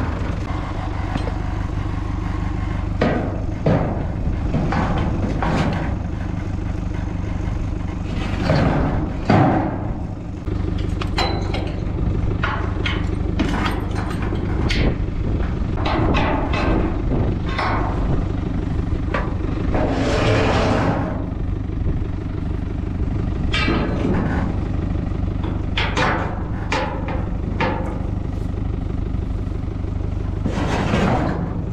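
Tractor engine idling steadily under irregular metal clanks and knocks as a steel calf creep feeder is handled and its hitch and wheels are set up.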